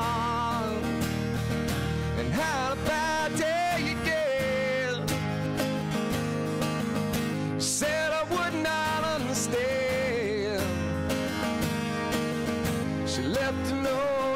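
Live acoustic music: two acoustic guitars strummed together while a man sings lead, his voice wavering with vibrato on held notes.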